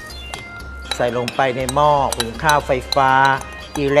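A man's voice over background music, with light clinks of glass and metal dishes.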